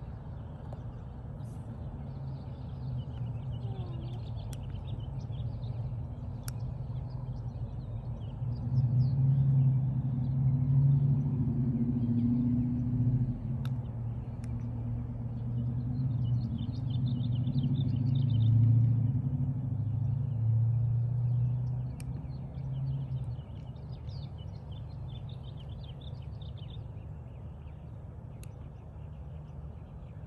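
Outdoor ambience with small birds chirping on and off, under a low engine-like hum that swells for about fifteen seconds in the middle and then fades.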